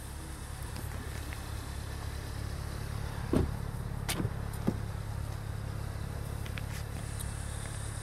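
2018 Kia Sorento SX Turbo's turbocharged four-cylinder engine idling, a steady low hum, with a few sharp clicks about halfway through.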